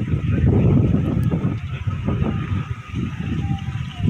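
Wind buffeting the phone's microphone: a loud, uneven low rumble that swells and dips, easing off a little in the second half.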